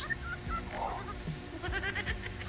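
A woman laughing over a video call in short pulses, easing off in the middle and picking up again near the end.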